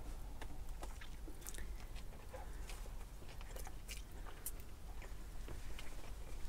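A man biting into and chewing a mouthful of chicken burger with coleslaw: faint, irregular clicking chewing sounds close to the microphone.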